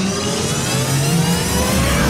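An outro sound effect: an engine-like rising whine that climbs steadily in pitch and grows louder, peaking near the end.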